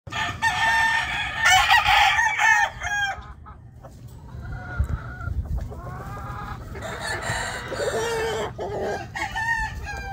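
Tarasco Grey gamecock rooster crowing twice, a long crow at the start and another about seven seconds in, with short clucking calls in between. Its wings flap just before the second crow.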